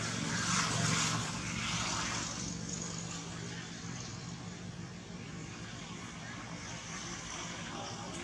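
Engine drone of a passing motor vehicle or aircraft, loudest about a second in and then easing off to a steady hum.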